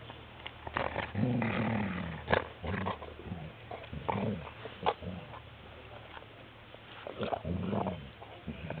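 A large dog gnawing and crunching on a big bone, with sharp cracking and chewing clicks throughout. Twice, about a second in and again near the end, it gives a low growl while it chews.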